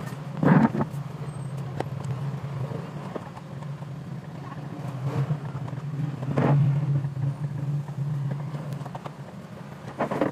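A steady low motor hum, with a broom's bristles sweeping over a tiled floor. Two louder, brief bumps stand out: one near the start and one past the middle.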